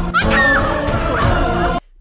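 A woman crying out and pleading in distress, shrill wailing cries over a tense held music score; the sound cuts off abruptly near the end.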